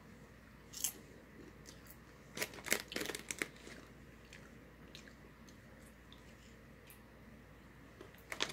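A person chewing seasoned pizza-flavoured popcorn: a crunch about a second in, then a short run of soft crunches between about two and a half and three and a half seconds in, and a few faint ticks after. The heavy seasoning leaves the popcorn without much of a crunch.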